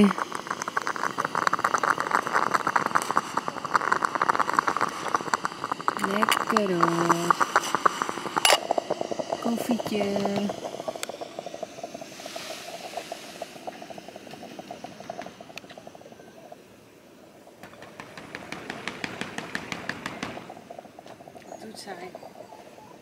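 Stainless-steel moka pot on a gas-cartridge camping stove, sputtering and gurgling as the brewed coffee is forced up into the top chamber. The crackling is densest for the first ten seconds or so, then quieter, with a faint steady tone.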